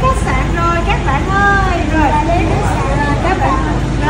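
Several voices of adults and children talking over one another, some high-pitched, with a steady low rumble underneath.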